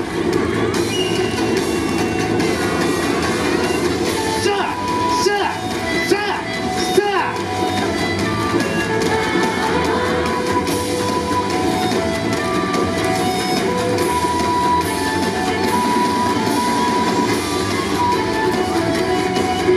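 Yosakoi dance music playing loudly over loudspeakers, with voices gliding up and down in its first several seconds and held melody notes after that.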